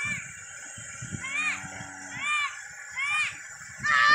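A child's high-pitched voice calling four times in short rising-and-falling cries, about a second apart.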